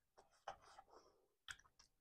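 Faint, wet clicks and smacks of eating amala and tomato sauce by hand: fingers working the food and the mouth smacking, a handful of short, irregular sounds.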